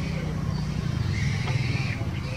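A young macaque squealing, a drawn-out high call from about a second in, over a steady low rumble.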